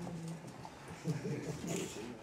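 Indistinct, low-level speech: a person's voice murmuring in short phrases.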